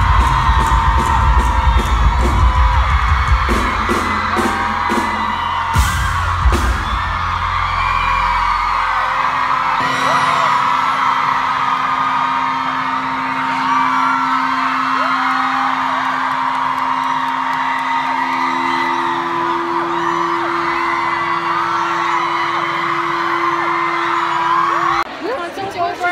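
A live pop-rock band plays loudly with heavy drums and bass and stops about nine seconds in. After that a packed crowd of fans goes on screaming and cheering, with a low steady tone held under it.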